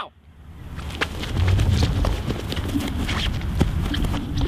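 Clatter of many running footsteps, swelling in from silence over about the first second and then holding steady.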